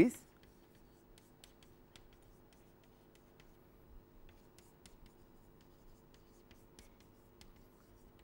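Chalk on a blackboard as words are written: faint, scattered taps and scratches of the chalk stick against the board. A steady low hum runs underneath.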